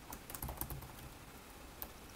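Typing on a computer keyboard: a quick run of keystrokes in the first second, then a single keystroke near the end.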